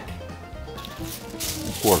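Soft background music, joined about one and a half seconds in by the rustling crinkle of a sheet of aluminium foil being handled.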